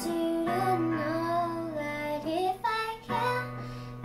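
A young girl singing a slow pop ballad, accompanying herself on a Casio electronic keyboard, which holds a low chord under her voice from about half a second in.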